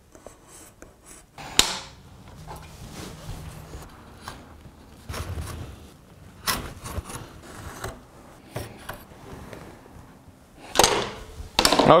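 Kiridashi marking knife scraping and scoring along wood, with a few sharp clicks and knocks of tools against the bench, the loudest about a second and a half in and near the end.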